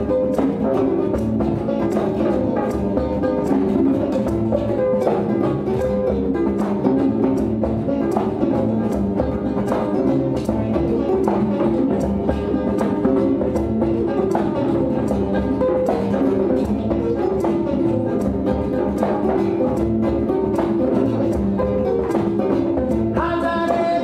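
Marovany, the Malagasy box zither, plucked in a dense, repeating pattern of notes together with an acoustic guitar. A voice comes in near the end.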